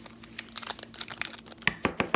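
Crinkling and tearing of a foil Pokémon trading-card booster pack wrapper being opened by hand: a run of small crackles with a few sharper clicks near the end.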